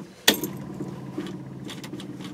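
A key turned in the ignition of a Mercury car gives a sharp click, then a steady low electrical hum with a faint buzz. The engine does not crank: the starter is not engaging.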